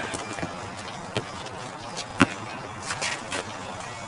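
A basketball bouncing on an outdoor concrete court: a few sharp knocks about a second apart, the loudest about two seconds in, over a steady outdoor hiss.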